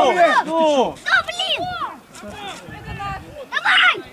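Men's voices shouting on a football pitch, loudest in the first two seconds and quieter after, with a brief harsh burst near the end.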